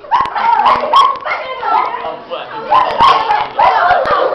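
Loud, high-pitched girls' voices shrieking and shouting in short, repeated cries, without clear words.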